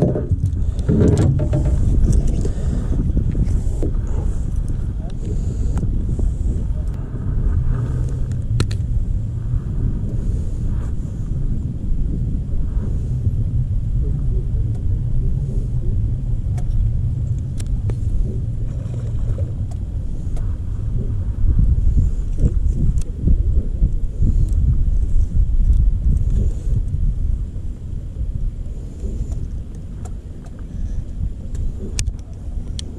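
A steady low rumble, with scattered clicks and rubbing from a GoPro camera and its clamp mount being handled close to the microphone.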